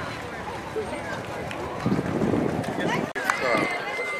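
Indistinct voices of people talking over outdoor street background noise, louder around the middle. The sound breaks off abruptly about three seconds in, then more voices and a thin steady high tone follow.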